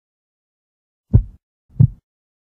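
Heartbeat sound effect: one double beat of low thumps, the second following the first about two thirds of a second later, starting about a second in.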